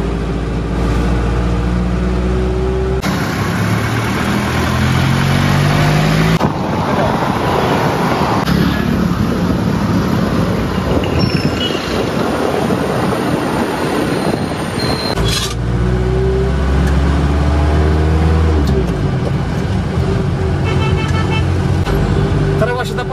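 Mercedes-Benz W123 200D four-cylinder diesel engine pulling as the car drives, heard from inside the cabin, its pitch rising with speed at the start and again about two-thirds in. For roughly twelve seconds in the middle it gives way to a steady rush of road and wind noise.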